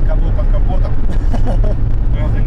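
Loud, steady low rumble of road noise inside the cabin of a Lada Niva being towed at speed.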